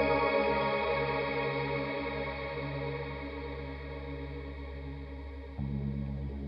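Electric keyboard playing a held chord through a chorus effect; it fades slowly until a new chord is struck shortly before the end.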